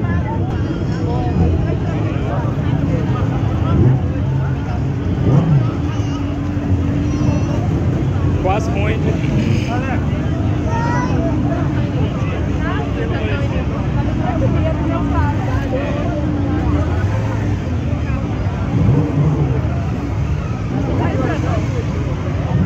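Crowd chatter and babble over the steady low running of motorcycle engines.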